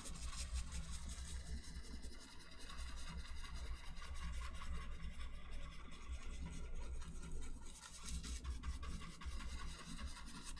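Large bristle brush scrubbing and rubbing over a wet oil-painted canvas, an uneven scratchy rasp as the brush fluffs and softens the bottoms of freshly painted clouds.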